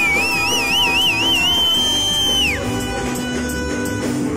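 Live band playing a cumbia-style dance tune on keyboard, electric bass, trumpet and saxophone. A high, wavering note rides on top, holds steady, then slides down and drops out about two and a half seconds in.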